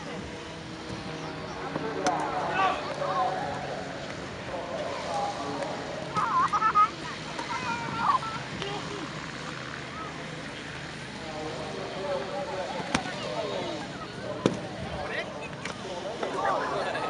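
Indistinct voices and calls from people in the open air, loudest about six seconds in, with a few sharp knocks during a staged unarmed-combat fight.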